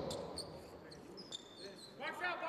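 Basketball game-court sounds in a hall: a few short, high-pitched sneaker squeaks on the hardwood floor, faint against the quiet of an almost empty arena.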